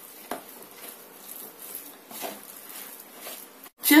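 A metal spoon stirring soft, oily dough in a plastic bowl: irregular soft strokes about a second apart.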